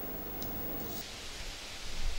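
Low, steady hiss with no distinct event: background noise in the gap between two stretches of speech.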